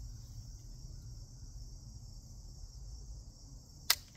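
Steady chorus of crickets, then near the end a single sharp click from the Rossi RS22 .22 rifle as its trigger is pulled and the round does not go off: a misfire, which the shooter takes for a dead round.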